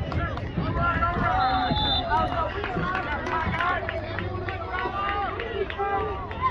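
Football spectators shouting and cheering over one another during a play, many voices at once, over a low outdoor rumble. A brief high whistle sounds about a second and a half in.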